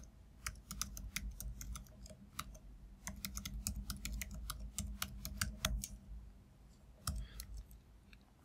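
Typing on a computer keyboard: quick, irregular runs of keystroke clicks that stop about six seconds in, with a last few keystrokes near the end.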